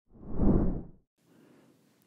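A single whoosh transition sound effect that swells up and dies away within about a second.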